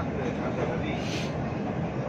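Steady running noise inside a moving train car on an elevated track, with a brief hiss about a second in.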